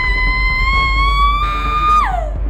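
A woman's long, high scream of labour pain, held on one pitch and rising slightly, then breaking downward at the very end, over background music.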